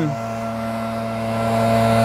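A steady low engine hum, growing slightly louder toward the end.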